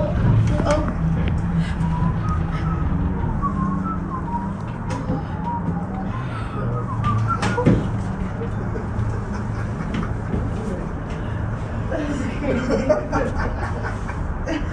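Steady low hum inside a Doppelmayr aerial tram cabin as it rides along its cables, with voices of other passengers wavering in the background. A single sharp click comes about halfway through.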